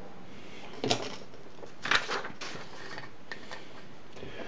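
A few brief rustling, scraping handling noises, about a second in and again about two seconds in, as a sheet of paper is slid aside across a wooden workbench and a popsicle stick is set down on a scrap board.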